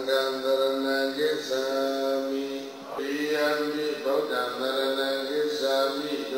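A Buddhist monk's male voice chanting in long, held, melodic phrases, with short breaks for breath between them.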